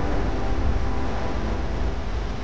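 Steady, low rumbling noise from a film clip's soundtrack, with the preceding music dying away at the start.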